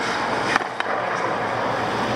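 Hockey skate blades scraping and gliding on ice, with two short sharp clicks about half a second in.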